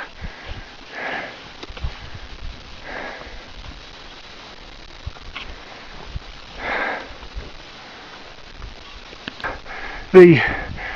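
A mountaineer's labored breathing from exertion at high altitude: three long, heavy breaths a couple of seconds apart, over a faint low rumble.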